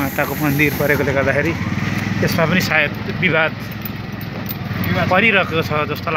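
People talking over a small vehicle engine running steadily. The engine's low pulsing is plainest in the gap between voices in the middle.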